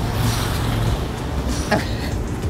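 Street traffic: a steady low engine rumble from nearby vehicles over a wash of road noise.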